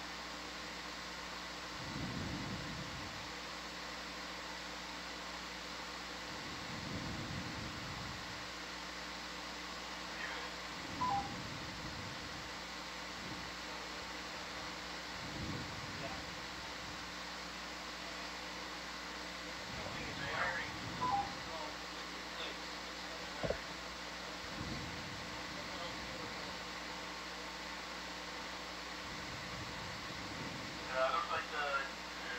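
Steady hum and hiss of the ROV control room's audio feed, with faint low swells every few seconds. A few short two-note electronic beeps sound at intervals, the first about eleven seconds in.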